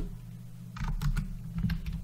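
Several keystrokes on a computer keyboard, starting about three quarters of a second in, as a value is typed into a dialog box.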